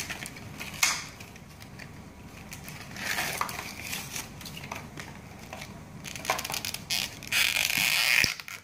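Plastic packaging crinkling and crackling as it is pulled and torn off a small block, in scattered sharp crackles. It is louder around three seconds in and again near the end.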